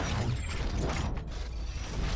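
Logo-intro sound effect: a dense mechanical whir over a steady low rumble, with scattered sharp clicks.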